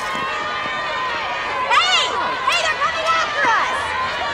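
A crowd of protesters shouting over a general crowd hum, with several high, raised voices cutting through about two seconds in and again near the end.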